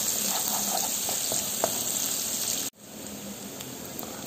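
Sliced shallots and garlic sizzling in hot oil in a frying pan while a wooden spatula stirs them; they are being cooked until wilted and fragrant. The sizzle drops suddenly a little under three seconds in and carries on quieter.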